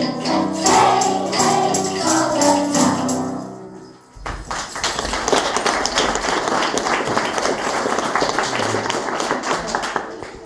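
A group of children singing together, the song ending about four seconds in; then the audience applauds.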